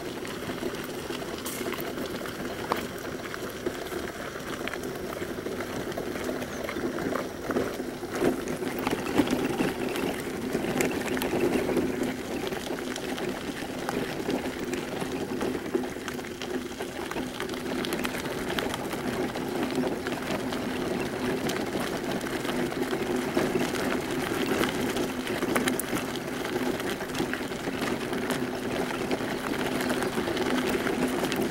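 Footsteps crunching on a gravel trail while walking, with many small scattered crunches over a steady low hum.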